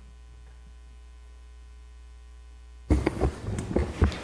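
Steady low electrical mains hum on the meeting-room audio feed. About three seconds in it breaks off into sudden loud knocks and rustling, as chairs and table microphones are moved.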